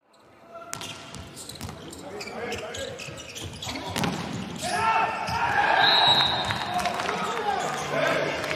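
Volleyball rally in an arena: the ball is struck again and again in sharp slaps and thuds. From about four seconds in, raised voices come in and build over the hits.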